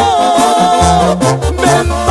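Mexican banda music in an instrumental passage: the wind and brass section holds a long melody note over a stepping tuba bass line, with percussion hits a little past the middle.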